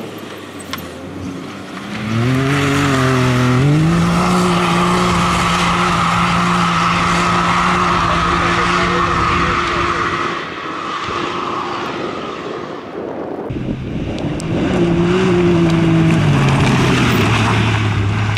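Can-Am Maverick X3 side-by-side's turbocharged three-cylinder engine under hard acceleration. Its note climbs about two seconds in and holds high and steady for several seconds, then drops away. It rises and falls once more near the end.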